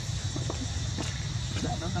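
Outdoor background of a steady low rumble and a steady high hiss, with a few faint clicks and distant voices; a person starts speaking near the end.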